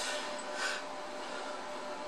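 Low, steady background hiss with a faint steady hum tone through it, and a brief soft rush of noise just over half a second in.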